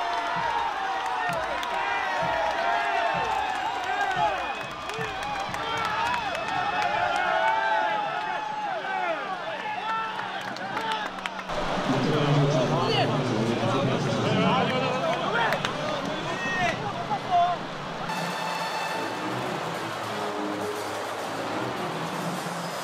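Baseball stadium crowd cheering, with many overlapping shouting voices, and excited shouts close by in the dugout. Music with steady tones comes in near the end.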